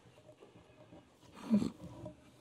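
Faint room noise, then a man's short throat-clear close to a lectern microphone about one and a half seconds in.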